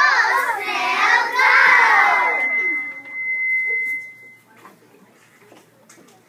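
A group of children's voices singing out together for about two and a half seconds. Then a single steady high whistle from the loudspeaker holds for about two seconds and fades out: feedback, the loudspeaker having been called kind of squeaky.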